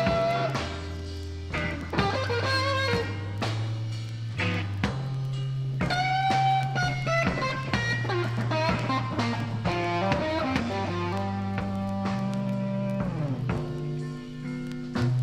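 Slow electric blues played live: a lead electric guitar solo of long, bent, sustained notes over held bass notes, with no singing.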